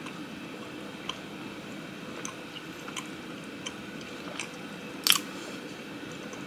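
A person chewing a mouthful of soft filled pancake, with faint mouth clicks about once a second and one sharper click about five seconds in.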